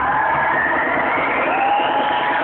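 A dance routine's music mix played over a hall's speakers, here a rising whine like a car engine revving up, with crowd noise underneath.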